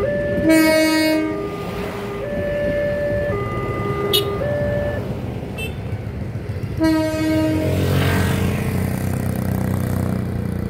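Level-crossing warning signal sounding its alternating two-tone chime, which stops about five seconds in, over the noise of a passenger train passing. A short horn blast comes near the start and another about seven seconds in, and music begins about a second later.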